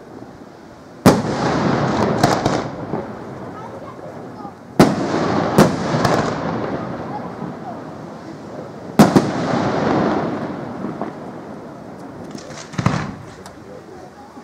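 Aerial firework shells bursting: three sharp bangs about four seconds apart, each followed by a few seconds of rumble dying away and a few smaller cracks, then a quick cluster of cracks near the end.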